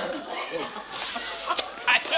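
A man's throat and mouth noises, short clucking gulps, as he brings a swallowed ball back up, with a couple of sharp clicks near the end.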